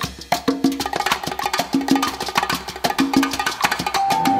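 Recorded salsa track in a percussion break: quick, sharp percussion strokes in a steady rhythm over a short low note that repeats.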